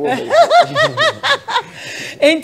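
A person laughing: a quick run of about six short, high-pitched laughs in the first second and a half.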